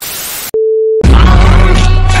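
TV-style static hiss for half a second, cut off by a steady test-card beep of about half a second, used as a transition between clips; loud music with heavy bass starts right after the beep.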